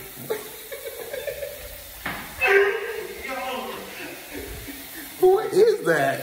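A young man laughing in stifled, breathy bursts, three times: briefly near the start, again around the middle, and once more near the end.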